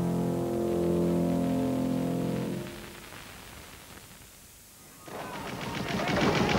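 Music holding a sustained chord fades away over the first three seconds, leaving a quiet lull. Near the end, gunfire and battle noise swell up.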